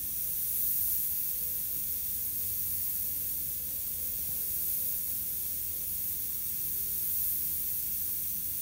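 Gravity-feed airbrush spraying paint in a steady hiss, held close to the paper for fine detail work, with a faint steady hum underneath.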